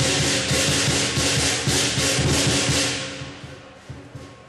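Lion dance percussion: cymbals clashing in a steady rhythm about three times a second over big-drum beats, dying away about three seconds in.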